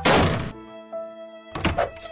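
A loud cartoon thunk sound effect at the start that fades over about half a second, then background music with held notes and a second short hit near the end.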